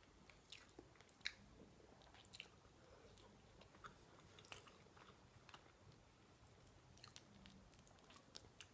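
Faint close-up chewing of roast duck leg meat, with scattered soft mouth clicks.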